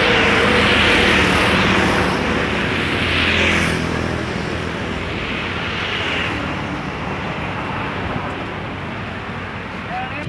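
Road traffic passing close by: vehicles go by as two loud swells of noise in the first four seconds, followed by a steadier, quieter traffic noise.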